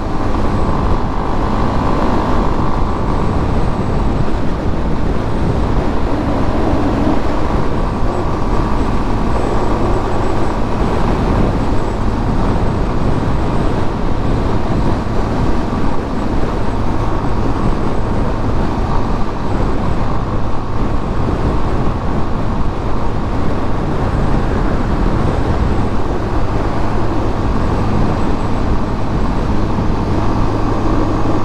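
Yamaha Fazer 250's single-cylinder engine running steadily at highway cruising speed, under a constant rush of wind and road noise.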